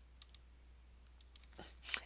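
A few faint, sharp clicks, spaced irregularly, with a louder one just before the end.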